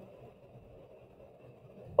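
Faint steady background hiss between stretches of speech, with no distinct sound: room tone.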